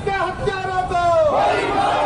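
A crowd shouting a political slogan in unison, in long drawn-out calls.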